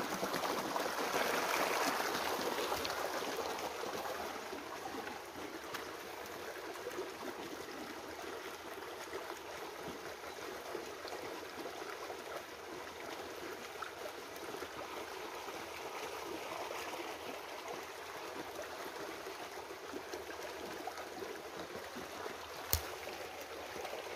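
Small rocky river running over stones, a steady rushing that is louder for the first few seconds and then settles to a softer, even background. One sharp click near the end.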